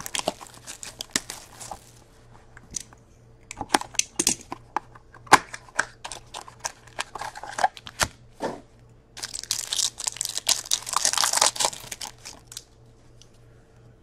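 A box of Upper Deck Ice hockey cards being opened and its foil packs handled, with scattered crinkles and clicks. About nine seconds in come a few seconds of foil card packs being torn open and crinkling.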